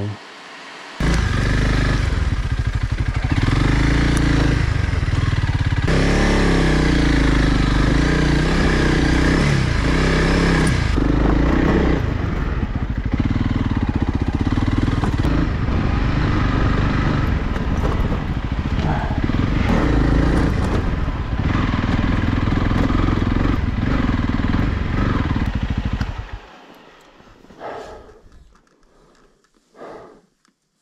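Honda CRF300 Rally's single-cylinder engine working hard as the bike is ridden over a rough, rocky trail, the revs rising and falling continually. It starts about a second in and stops abruptly about 26 seconds in.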